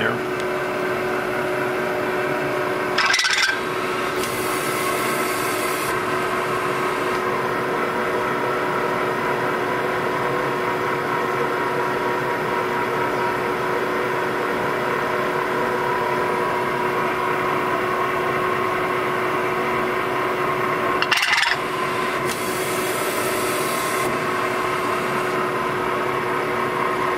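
ProtoTRAK CNC milling machine running steadily, its spindle turning a long end mill that the program steps through crank-clearance notches already cut in a small block Ford cylinder block for a stroker crank. A brief sharp noise comes about 3 seconds in and again about 21 seconds in, each followed by a couple of seconds of hiss.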